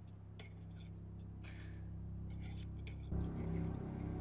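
A low sustained drone swells gradually, with a heavier layer coming in about three seconds in, under a few light clinks of glass and cutlery.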